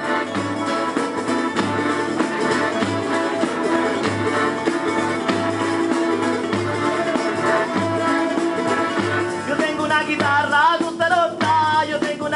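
Live band music over loudspeakers: an instrumental passage with guitar and a steady, even beat. A singer's voice comes back in near the end.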